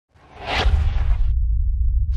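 Whoosh sound effect of a logo intro: a noisy swell that rises, peaks about half a second in and cuts off suddenly at about 1.3 seconds, over a deep rumble that carries on underneath.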